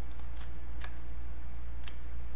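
A few sharp computer mouse clicks, four in two seconds, over a steady low hum.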